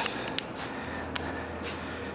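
Quiet room tone: a faint low steady hum that sets in a little before the middle, with a few faint clicks.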